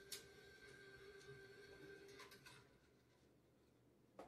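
Near silence in a small venue: a faint steady tone that stops a little past halfway, with a few faint clicks.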